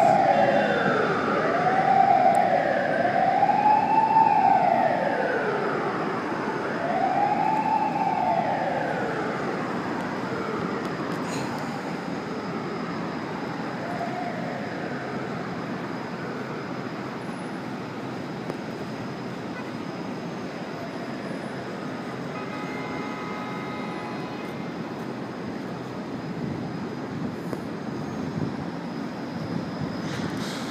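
Emergency vehicle siren wailing, rising and falling about every two seconds, fading away within the first ten seconds or so. Afterward only the steady hum of city traffic remains.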